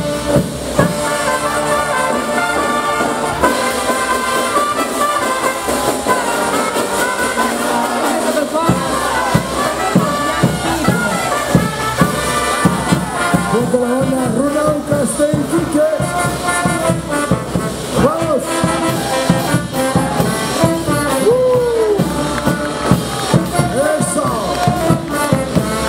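Live brass band playing caporales dance music: trumpets, trombones and big bass horns over a steady drum beat.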